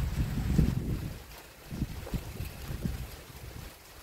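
Wind buffeting the phone's microphone: an uneven low rumble in gusts, strongest in the first second or so and dying down toward the end.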